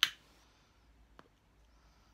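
A pipe lighter being struck: one sharp click with a short rasp, then a faint tick about a second later.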